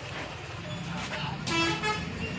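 A vehicle horn sounds one short honk near the end, over a steady low rumble of traffic.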